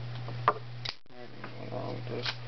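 Duct tape being handled and pulled while wrapping: two short sharp clicks, the first about half a second in and the second just before the one-second mark. A steady low electrical hum runs under them.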